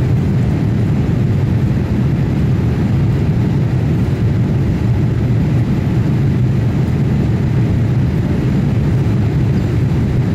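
Steady cabin noise of a Boeing 787-8 airliner in flight, heard from inside the cabin: a constant low rush of engine and airflow noise with no distinct events.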